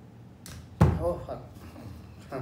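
A light click, then a single heavy thump as a phone on a small plastic tabletop tripod is handled and set on the table, followed by a brief spoken sound.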